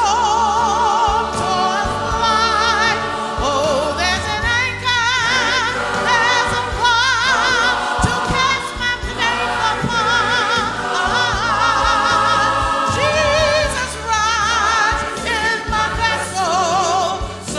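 Mixed church choir singing with vibrato over instrumental accompaniment that holds steady low notes throughout.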